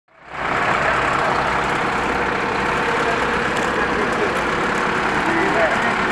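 Fire engine's engine running steadily, its pump feeding a hose line. Voices come in faintly over it in the last two seconds.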